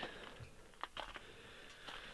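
A quiet pause: faint outdoor background with a few soft clicks near the middle.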